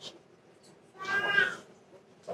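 A single short high-pitched cry, about half a second long, about a second in, with a faint click just before it.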